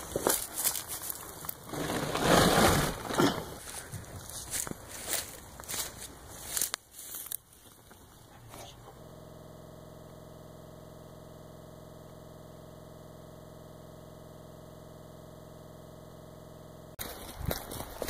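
Crackling and rustling of movement through brush picked up on a phone microphone, loudest about two to three seconds in and dying away by about eight seconds. Then a steady, even hum with a faint buzz until about a second before the end, when the crackling returns.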